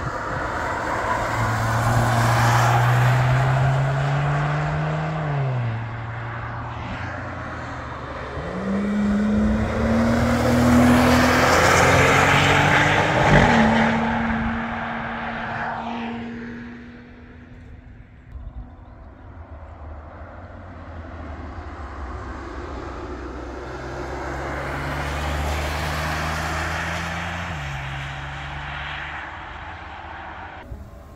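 Cars driving past on a racetrack one after another, three in all, each engine rising in pitch as it accelerates and then dropping sharply at a gear change. The second pass, about midway, is the loudest, and its engine note holds steady as it fades away before the third car comes through near the end.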